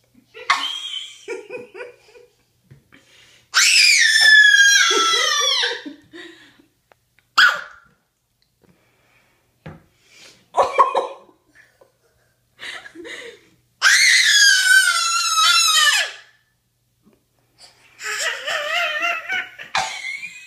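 A toddler's high-pitched squealing laughter. It comes as two long, loud shrieks of about two seconds each, falling in pitch, a wavering one near the end, and short yelps and giggles between them.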